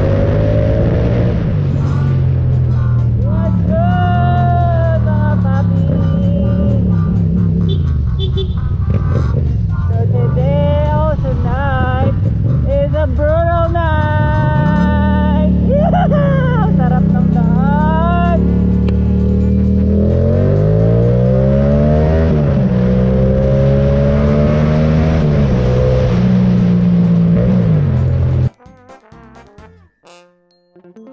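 Yamaha MT-07 parallel-twin engine pulling at road speed, its pitch climbing and dropping again and again as the rider revs it and shifts. It stops abruptly shortly before the end. Music with singing plays over it throughout.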